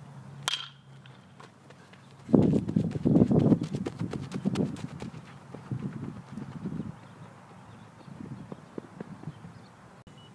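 A metal baseball bat hits a ball: one sharp ping with a brief ringing tone about half a second in. From about two seconds in, a loud rough rumble with quick thuds runs for about five seconds, then dies down.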